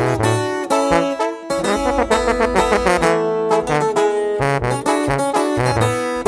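Instrumental regional Mexican band music, with brass horns playing melody lines over a moving bass line and no singing.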